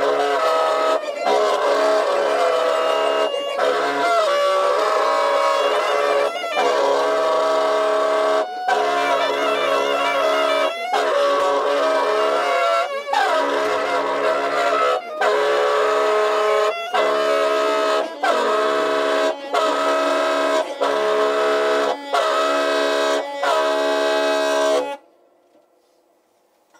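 Baritone and alto saxophones holding long, steady notes together, broken by short gaps every one to two seconds. They stop together about a second before the end, closing the piece.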